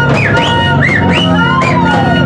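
Live band music: a held low guitar-and-bass drone under high, wailing pitch slides that swoop up and down in quick loops, with one long rising-and-falling line about halfway through. A long curved horn and a wooden flute are being played over the band.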